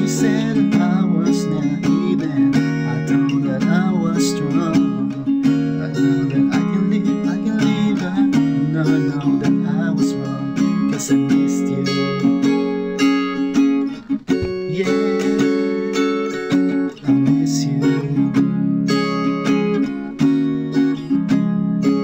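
Capoed acoustic guitar strummed in a steady down-up pattern, alternating Am7 and G chords. The strumming breaks off briefly about fourteen seconds in.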